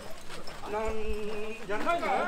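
Men's voices of mikoshi bearers calling out, quieter than the shouting just before: one held call from about a third of the way in, then another call rising near the end.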